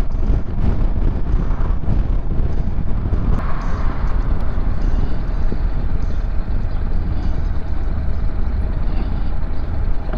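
Motorcycle riding at road speed: engine and road noise under a heavy, steady low rumble of wind on the microphone.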